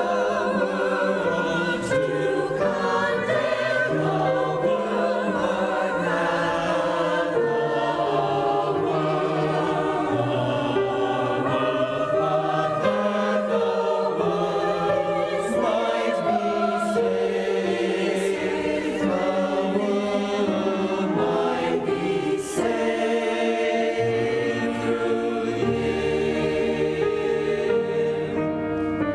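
Mixed church choir of men and women singing together, several voice parts sounding at once.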